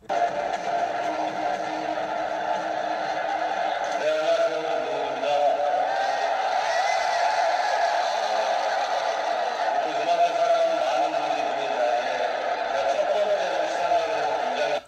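Music mixed with voices, played back from a video clip. It cuts in suddenly and runs at a steady, fairly loud level throughout.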